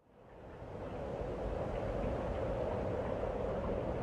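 Steady background noise that fades in from silence over about the first second, then holds evenly with no distinct events.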